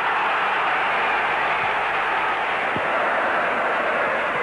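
Large football-stadium crowd cheering a goal, a loud, steady wall of noise.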